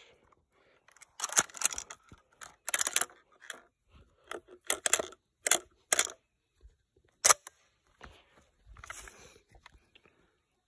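Remington 1100 12-gauge semi-auto shotgun's action being worked by hand: an irregular string of metallic clicks and clacks, the sharpest about seven seconds in. A shell that failed to feed is being pushed into place.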